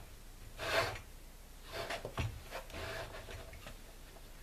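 Blue plastic-cased LiFePO4 battery cells sliding and scraping on a wooden bench as they are turned by hand, with a few light clicks and a knock about two seconds in.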